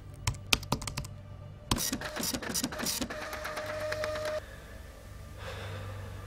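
Typing on a computer keyboard: quick, irregular key clicks, thickest in a burst around two seconds in, stopping about three seconds in. A short steady tone and a low hum follow.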